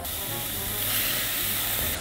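Kimchi sizzling as it goes into hot olive oil and minced garlic in a steel pot: a steady hiss that swells slightly in the first second.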